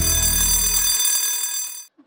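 A bright, ringing bell-like sound effect closing the title jingle, held steady with a deep low note under it for the first second. It cuts off abruptly just before the end.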